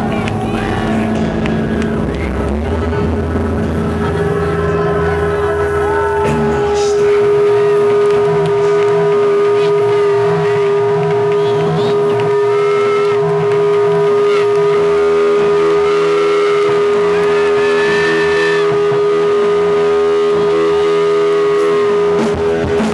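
Loud live band music in an instrumental passage: electric guitar and electronic backing, with one synth note held steady from about four seconds in. A pulsing low bass line drops away about seven seconds in.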